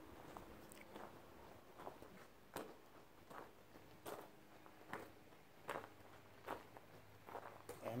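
Faint footsteps on gravel and grass at a steady walking pace, a little over one step a second.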